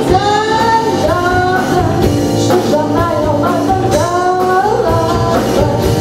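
A woman singing a Mandarin pop song into a handheld microphone, backed by a live band with drums, in a large hall.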